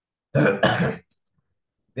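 A man clearing his throat: two quick, loud rasps in a row about half a second in.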